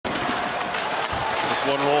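Ice hockey arena game noise: a steady crowd hum with skates and sticks on the ice and a few faint knocks. A play-by-play commentator starts speaking near the end.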